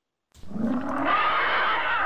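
A rushing sound-effect swell that comes in after a moment of silence and builds steadily, leading into the segment's announcement.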